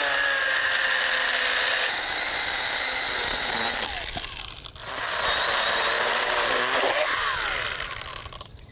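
Small cordless pruning saw cutting into the split, borer-hollowed black locust trunk. It runs steadily with a motor whine, stops briefly about halfway, then cuts again and winds down near the end.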